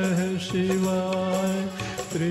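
Hindi devotional song to Shiva: a sung note held long over a steady percussion accompaniment.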